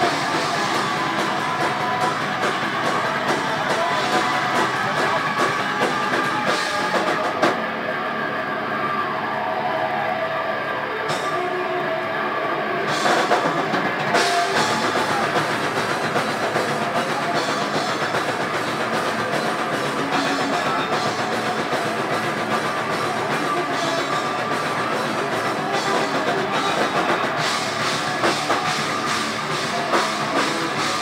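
Live thrash/death metal band playing at full volume: distorted electric guitar and drum kit. The cymbals drop out for several seconds from about 7 seconds in, and the full band comes back in around 14 seconds.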